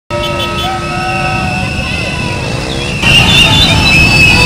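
Noisy street crowd: shouting voices over steady held tones. About three seconds in it swells louder as higher held tones come in.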